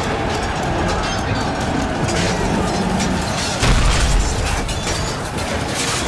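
Battle sound effects: a dense, rumbling din of a raging fight with sharp clashes. A heavy boom comes about three and a half seconds in, with music underneath.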